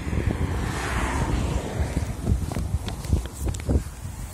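Wind buffeting a phone microphone, a gusty low rumble, with a few sharp handling clicks in the second half as the phone is swung around.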